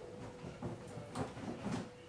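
A few faint knocks and handling noises in a small room, over a steady faint hum.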